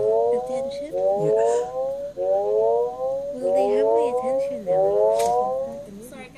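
Building fire alarm sounding a repeated rising whoop tone, about one sweep every 1.2 seconds, five sweeps in all, stopping shortly before the end; it is the evacuation signal. Voices murmur faintly underneath.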